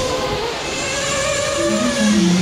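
Several RC race cars running on a dirt track: a steady noisy rush with held motor-whine tones over it.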